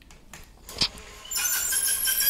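A click, then the BENEXMART battery-powered chain-drive roller blind motor starts running with a steady whine about a second and a half in, pulling the blind's bead chain to move the blind.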